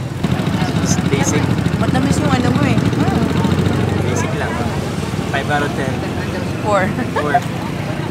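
Road traffic: a vehicle engine running close by, strongest in the first half, with people's voices talking over it later on.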